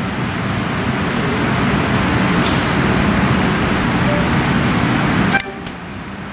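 Steady background din like road traffic, with faint horn-like tones. It cuts off abruptly near the end, leaving a quieter background hum.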